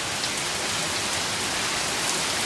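Heavy rain pouring down: a steady, even hiss of a downpour.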